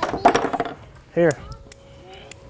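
A brief rattling clatter of a hard plastic toy being handled and passed between hands: a quick, dense run of clicks in the first moment, then a few single clicks.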